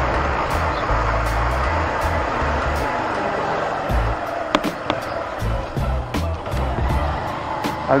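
Wind and road noise on the microphone of a slowly ridden motorcycle: a steady rush, with low wind buffeting that comes and goes and a couple of sharp clicks about halfway through.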